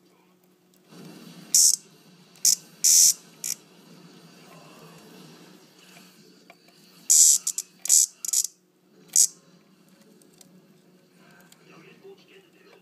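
Cicada giving short, loud buzzing squawks when prodded with a pen, about eight in two clusters, the disturbed insect's distress call.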